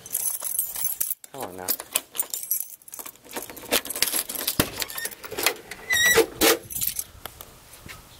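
A bunch of car keys jangling and clicking against the trunk lock of a 1977 Pontiac Bonneville as the trunk is unlocked and opened, with a sharp metallic click and brief ring about six seconds in.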